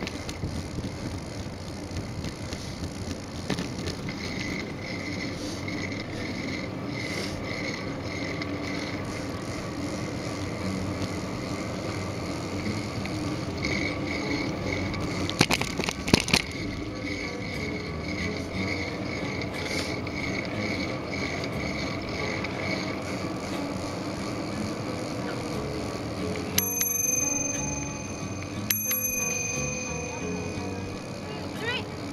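Bicycle being ridden along a paved path: steady tyre and drivetrain noise with wind, a high thin squeak coming and going, two sharp clatters a little over halfway, and ringing tones twice near the end.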